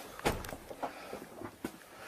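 A few dull knocks, irregularly spaced about half a second to a second apart, the loudest about a quarter of a second in.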